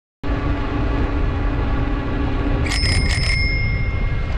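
A bicycle bell rung with several quick strikes a little under three seconds in, its ring hanging on afterwards. Under it runs a steady low rumble of wind on the microphone and tyre noise from the moving bike.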